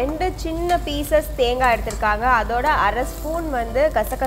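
Mostly a woman talking in Tamil, with the faint sizzle of prawn masala frying and being stirred in a steel kadai underneath.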